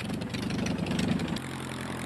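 A small piston aircraft engine with propeller, the LDA-01 prototype's 85 hp Continental, running with a fast, even throb. About two-thirds of the way through it settles into a steadier low hum.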